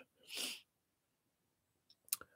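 A single short, soft breath from a man, a brief hiss about a quarter of a second long.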